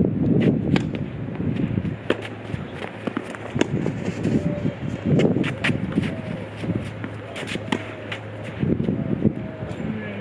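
Tennis serve and rally on a clay court: sharp racket-on-ball strikes about a second apart, with footsteps on the clay and wind rumbling on the microphone.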